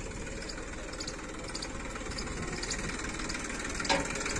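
Tractor diesel engine running steadily while it drives the hydraulic oil pump that lifts a loader bucket full of manure, its sound growing slowly louder. A brief knock comes near the end.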